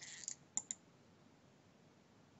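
Two quick computer-mouse clicks about half a second in, close together, then faint room tone.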